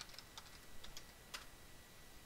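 Faint computer keyboard keystrokes: about half a dozen quick, separate key taps as a password is typed, the last one a little louder.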